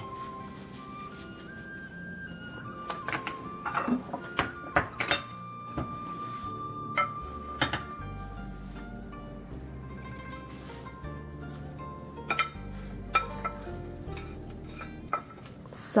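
Background music with slow held notes, over scattered clinks and knocks of a spatula stirring food in a glass bowl.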